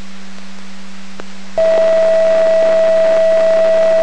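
Fire dispatch channel heard through a Radio Shack PRO-51 scanner: faint hiss with a steady hum and a click, then about one and a half seconds in a loud, steady single alert tone comes on and holds. This is the alerting tone sent ahead of a dispatch call.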